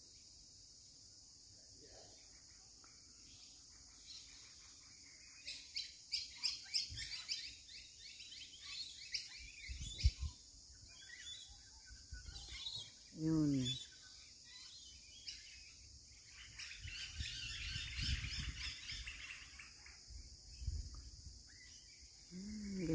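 Birds chirping and chattering over a steady high drone: a run of quick chirps about a quarter of the way in, and a longer spell of dense chatter a little past the middle.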